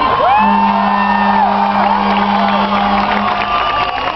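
Crowd cheering and whooping, with a steady low tone held for about three seconds over it.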